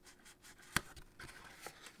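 Scored cardstock being handled, folded and pressed together by hand as adhesive-backed tabs are stuck edge to edge, with light rustling and a few small clicks; one sharp click a little under a second in is the loudest.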